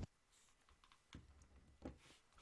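Near silence, broken by two faint clicks from computer controls, about a second in and again near the end.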